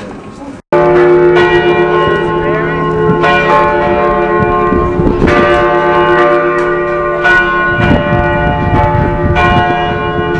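Church bells ringing: struck notes of several pitches follow one another about every second or two and ring on over each other. The peal starts suddenly just under a second in.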